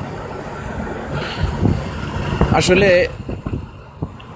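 Steady road and engine noise heard inside a moving car's cabin, with a brief voice about two and a half seconds in.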